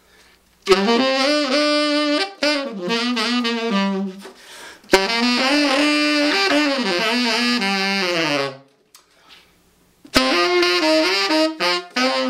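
Tenor saxophone played with a growl: the player growls or hums in his throat while blowing, giving a nasty, dirty rock-and-roll tone. Three phrases of held and moving notes with short breaks between them.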